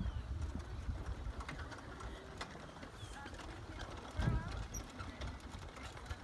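Faint open-air background noise with a low rumble, light scattered clicks and faint distant voices; a short voice sound about four seconds in.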